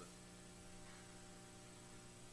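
Near silence with a steady low electrical hum in the background.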